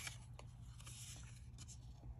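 Faint rustle and light ticks of cardboard trading cards sliding against one another as they are shuffled through by hand, over a low steady room hum.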